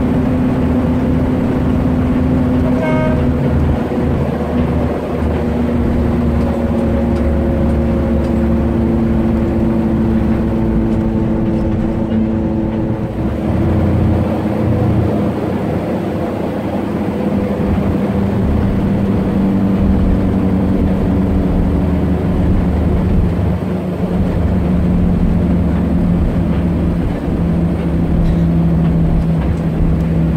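Coach bus cruising at highway speed, heard from inside the passenger cabin: a steady engine drone over a low road rumble. The engine note sinks slowly in pitch in the second half.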